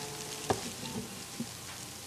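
Steady hiss from an old analogue video recording, with a sharp light click about half a second in and a smaller tick later.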